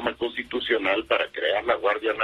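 Speech only: a man talking in Spanish over a telephone line, with the thin, narrow sound of a phone call.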